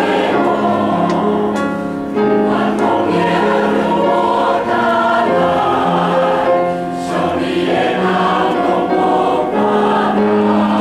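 Mixed church choir of men and women singing a hymn in held chords, with short breaks between phrases about two seconds in and again near seven seconds.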